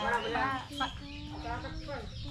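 Chickens clucking in short pitched calls, mixed with people's voices.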